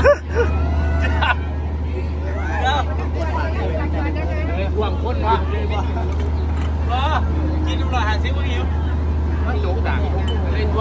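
Large diesel generator running with a steady low hum under the chatter of a crowd, with a short loud burst of voice right at the start.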